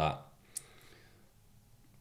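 Near silence with one short, faint click about half a second in.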